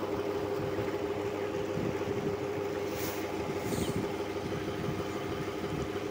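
Water gushing from a tube well's discharge pipe into a concrete tank, splashing steadily, with a constant low hum underneath.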